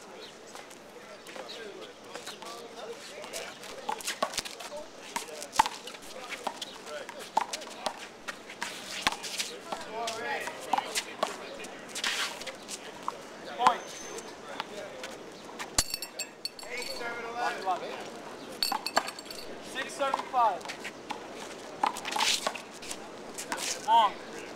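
A handball rally: a run of sharp, irregular slaps as hands strike the small rubber ball and the ball hits the wall and court, with the loudest smack around the middle. Short bursts of players' voices come in between.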